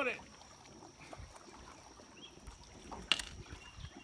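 Quiet background of a small boat on open water, light water and wind noise, with one short sharp knock about three seconds in.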